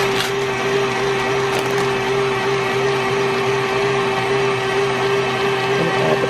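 KitchenAid Artisan stand mixer running at a steady speed, its beater turning through a bowl of cream cheese and sweetened condensed milk; an even motor hum with a steady whine.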